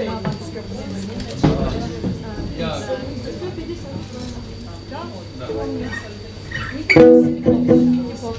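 Acoustic guitar played through the PA: a strummed hit about a second and a half in and scattered notes, then a loud ringing chord about seven seconds in. People are talking in the room throughout.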